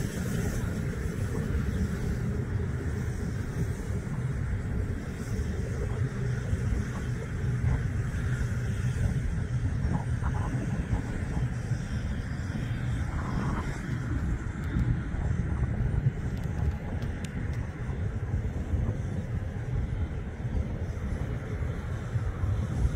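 A steady low rumble of wind buffeting the microphone, with the faint whine of a radio-controlled F-15 model jet's engines as it taxis across grass.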